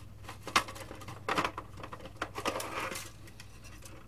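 Handling noise from a plastic model kit and a small battery case: scattered light clicks and knocks, one sharper click about half a second in, and brief scraping rustles as the model is turned and the case with its wires is picked up.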